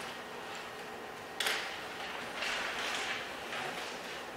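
Pen strokes on a board while drawing a diagram: a sharp tap as the pen meets the surface a little over a second in, then scratchy strokes, the longest lasting about a second near the end.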